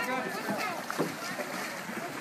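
Kayaks and canoes launching from a lakeshore: water splashing around wading feet and paddles, with one short knock or splash about a second in. Indistinct voices chatter in the background.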